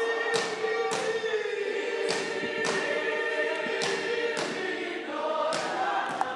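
Church congregation singing a hymn together in long held notes, with sharp beats in pairs about every two seconds keeping time.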